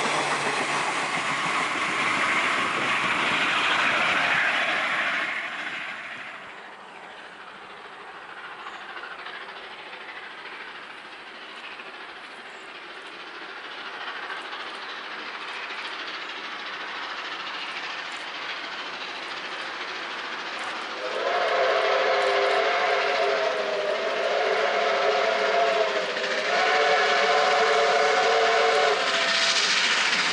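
Passenger carriages clattering away along the rails, fading out over the first few seconds. Later, the chime whistle of R711, a Victorian Railways R class steam locomotive, sounds three long blasts as it approaches along the line.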